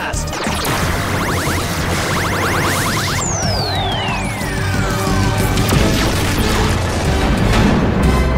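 Action-scene soundtrack music with layered sci-fi effects: a fast run of clicks, then a long falling whistle as the glowing projectile flies, and a crash and boom of an explosion in the second half.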